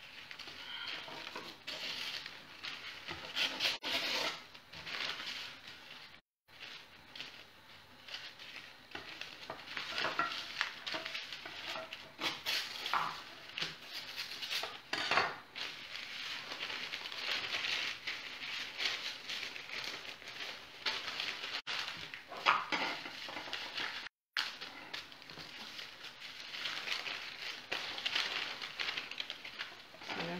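Baking paper being folded, creased and torn by hand: irregular crinkling and rustling, broken twice by a brief silent dropout.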